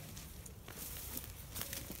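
Quiet footsteps and rustling in leaf litter and bracken, with a few small crackles, growing slightly louder under a second in.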